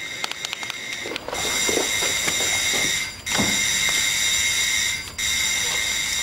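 Doorbell rung again and again: a rattling start, then a steady high ringing held for about two seconds at a time, three times in a row with brief gaps between.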